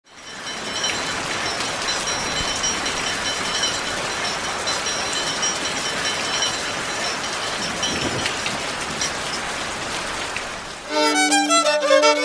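An even rushing noise with faint high tones for about eleven seconds, then violin and harp music for the Andean scissors dance begins abruptly near the end.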